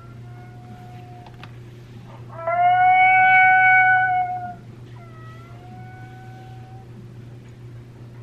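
FoxPro Fusion electronic predator call playing a recorded animal cry through its speaker: a couple of short faint cries, then one loud drawn-out cry lasting about two seconds, then a softer wavering one.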